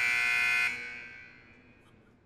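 Electronic buzzer of a debate countdown timer, one steady tone signalling that the speaker's time is up. It cuts off about two-thirds of a second in and fades away.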